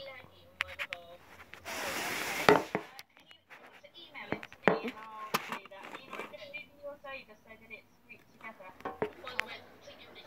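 Quiet, indistinct voices talking or whispering, with a loud burst of hiss about two seconds in that ends in a sharp click, and a few more clicks a couple of seconds later.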